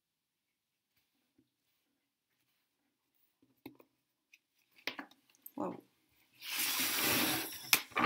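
Tarot cards sliding and scraping across a wooden table as a spread is gathered up and a card dealt, a rustling that lasts about a second and a half near the end and stops with a light tap. Before it, near silence with a few soft clicks of cards being touched.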